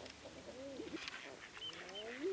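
Faint birds cooing: several overlapping dove-like calls that rise and fall in pitch, with a short high whistle near the end.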